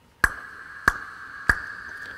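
Three sharp clicks about 0.6 s apart, each ringing out through a long digital reverb built from a Lexicon 480L impulse response. A steady ringing band sits in the upper mids under them while the reverb's high end is being boosted.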